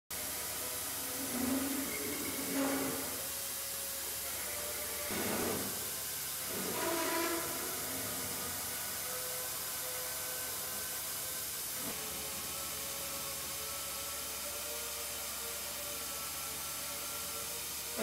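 Clamshell pipe-cutting and beveling machine cutting a 52-inch steel pile, its hose-fed air motor giving a steady loud hiss with a faint steady whine. A few brief louder swells come in the first eight seconds.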